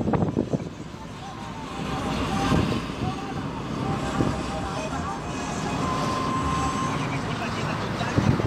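Steady road and engine noise inside a moving car at highway speed. A voice is heard briefly at the start.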